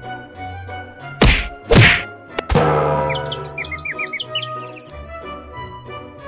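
Three loud comic whacks about a second apart, followed by a quick run of high bird-like chirps lasting about two seconds, over faint background music.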